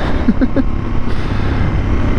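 A 650cc single-cylinder motorcycle running at road speed, with wind noise, picked up by a lavalier mic inside a full-face helmet. The engine and wind make a steady low rumble, and a short laugh comes about half a second in.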